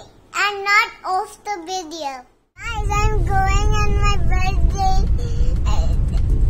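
A little girl singing in a high voice. About two and a half seconds in, the sound cuts to the inside of a car, where her singing goes on over a steady low rumble.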